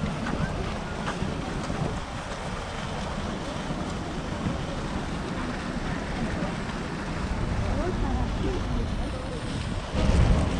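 Wind buffeting the camera microphone, a steady low rumble with hiss, over faint voices of people.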